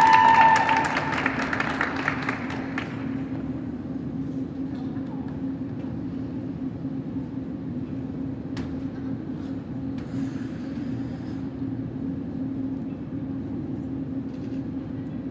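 Scattered applause and a drawn-out cheer from the rink-side audience, dying away within about three seconds. After that there is a steady low hum in the ice arena, with a couple of faint knocks.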